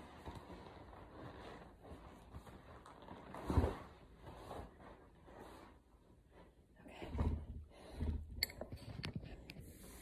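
Rustling and three soft thumps, about three and a half seconds in and twice near the end, as an exercise mat is moved and put down. A few sharp clicks follow near the end as the phone is handled.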